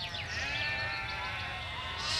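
A flock of sheep bleating, several long calls overlapping.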